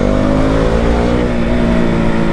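KTM RC 200 single-cylinder motorcycle engine running under way, one steady engine note whose pitch falls slowly across the two seconds.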